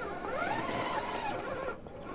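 Electric motor and gear whine of a 1/10-scale RC rock crawler climbing rock. The whine rises and falls in pitch as the throttle is worked.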